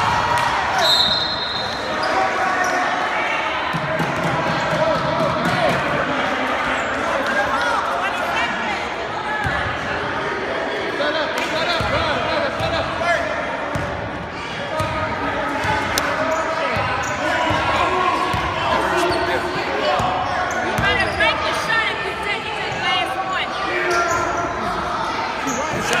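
Basketball game on a hardwood gym floor: a ball bouncing repeatedly, sneakers squeaking at times, and spectators' voices, all echoing in a large gym.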